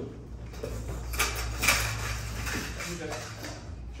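Gold metal tube sections of a collapsible balloon-arch frame clinking and knocking together as they are lifted out of a cardboard box and gathered up. There are a few sharp clacks, the loudest a little under two seconds in.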